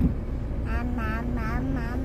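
Steady low rumble of a car's cabin while driving, with a young child's voice giving a quick run of about five short syllables partway through.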